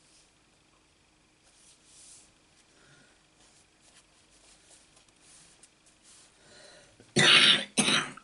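Faint rustling of card stock being handled on a craft mat, then a person coughs twice near the end, loud and short.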